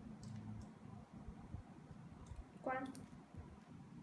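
Faint, light clicks of small plastic Kinder Joy toy pieces being handled and fitted together, with a short voiced sound about three-quarters of the way through.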